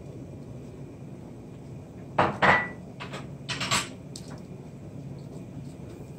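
Metal kitchenware clinking: a few knocks and clinks between about two and four seconds in, one leaving a short ringing tone, over a steady low background hiss.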